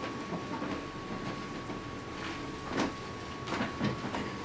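Room noise as people shuffle and move about: a few scattered knocks and bumps in the second half, over a steady faint high-pitched hum.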